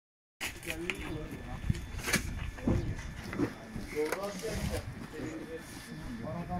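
Indistinct chatter of several people, with a few sharp knocks and thuds from cardboard boxes being handled and set down.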